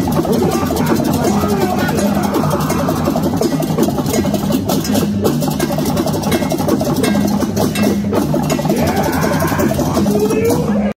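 Balinese gamelan music: fast, dense clashing metal percussion over a steady low ringing tone, running on without a break.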